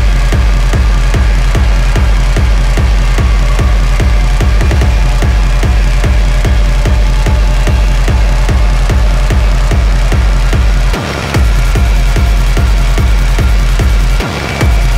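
Loud electronic techno track: a steady, heavy kick-drum beat under a dense, noisy synth layer. The bass drops out for a moment about eleven seconds in, then the beat returns.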